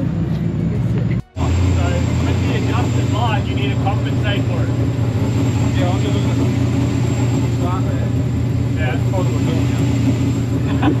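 A steady, low engine drone with no revving, with faint voices and laughter over it. The sound cuts out for an instant about a second in.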